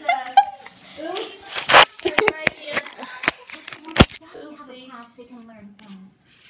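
Voices, broken by a quick run of sharp knocks about two seconds in and one loud sharp thump about four seconds in.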